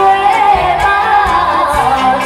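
A woman singing into a handheld microphone through a stage PA over backing music, holding one long, wavering note.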